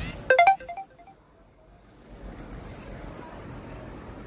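A short electronic chime, a quick run of bright notes that rings out and fades with an echo, followed by steady outdoor background noise.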